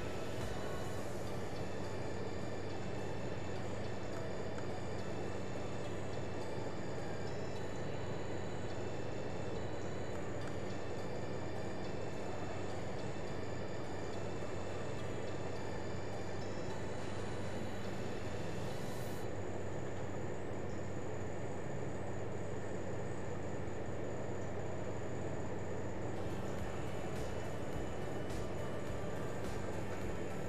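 Steady background hiss with a low electrical hum and a faint high-pitched whine, the room tone of a desk recording setup.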